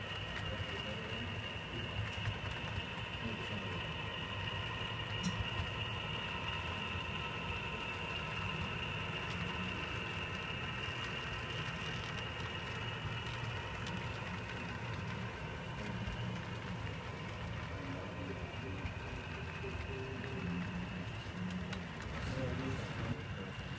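HO scale model freight train running past: a steady mechanical hum and high whine over a continuous low rumble.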